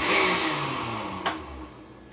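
Countertop blender pulsed once: the motor starts suddenly with a loud whir, then winds down over about a second and a half, its pitch falling as the blades coast to a stop. A sharp click comes partway through.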